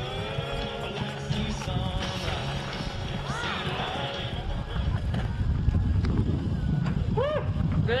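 Music over a loudspeaker fading out in the first moments, then a low rumble under people yelling and whooping a few times, once near the middle and twice near the end, as a barrel-racing horse gallops home.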